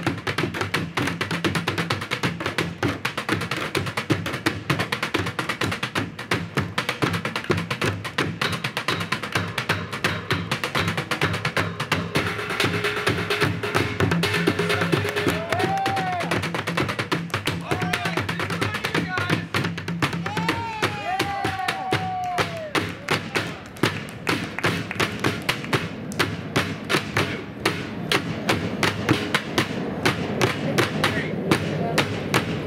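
Drumming on upturned plastic water-cooler jugs and buckets in a fast, steady beat, over a steady low musical line. A few voice calls ring out around the middle.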